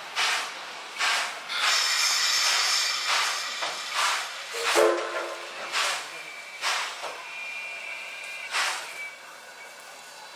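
C11 steam tank locomotive moving slowly under steam, with a short exhaust chuff roughly once a second and a longer burst of steam hiss in the second and third seconds.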